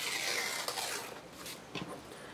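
A strip of old book-page paper being torn along a scalloped deckle-edge ruler: a rasping tear that fades out about a second in, followed by a few faint ticks.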